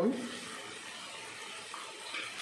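Steady sizzling of chopped onions frying in oil in a pan.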